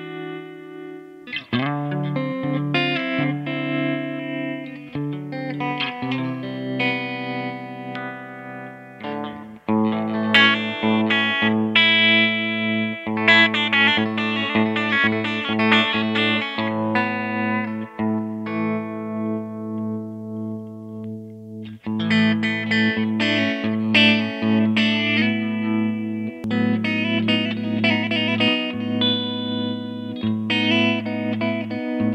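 G&L ASAT Classic electric guitar with old strings, played on the clean channel of a Fender Blues Junior tube amp. Chords and single notes ring on over sustained low notes, with fresh strikes about 9 and 22 seconds in.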